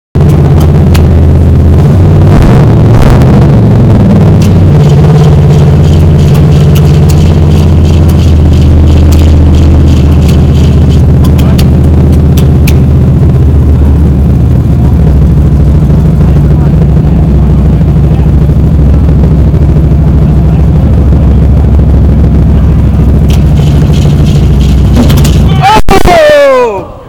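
Hot-rod V8 running loud through open, unmuffled headers, its pitch shifting a few times early on, with clusters of sharp pops as it backfires and spits fire out of the carburetor.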